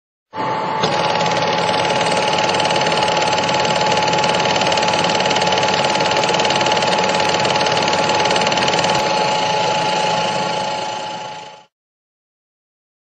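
Loud, steady mechanical whirring with a constant hum through it, fading out shortly before the end.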